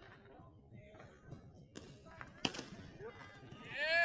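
Sharp smacks of a baseball into leather gloves, a faint one and then a louder one about halfway through, followed near the end by a loud, drawn-out shout that rises and falls in pitch.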